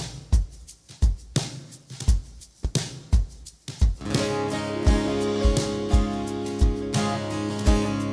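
A live band starting a country song: a kick drum with light percussion plays alone at first, about two beats a second. About halfway through, strummed acoustic guitar and held chords come in over the beat.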